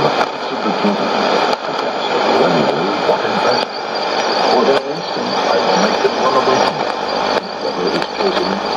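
Shortwave AM broadcast on 5830 kHz from a Sony ICF-2001D receiver: a voice is reading, mostly unintelligible under heavy static and hiss. The signal fades, with several brief sudden dips in level.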